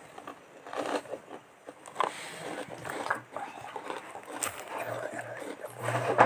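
Soft, irregular rustles and small clicks from movement right up against the phone's microphone.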